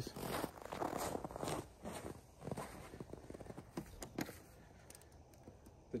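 Footsteps on snow, a run of irregular steps over the first two and a half seconds, followed by a few faint clicks.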